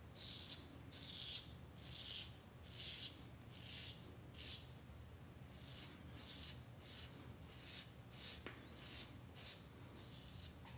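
Parker 64S double-edge safety razor with a Personna Prep blade scraping lathered stubble off the neck against the grain: a steady run of short, faint rasping strokes, roughly one every two-thirds of a second.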